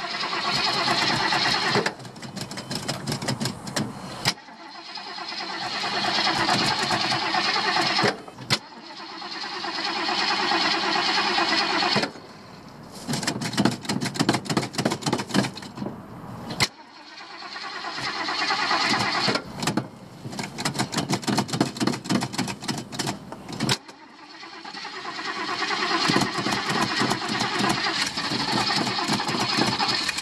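Old car engine being cranked by its starter again and again in repeated tries to start it, in spells of a few seconds with short breaks between. It does not settle into a steady run; the tries come close to starting.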